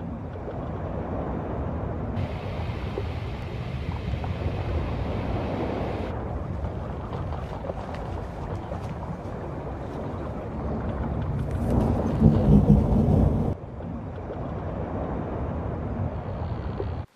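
Storm sound effect: steady rushing wind and water noise with a louder low rumble of thunder about twelve seconds in that cuts off suddenly.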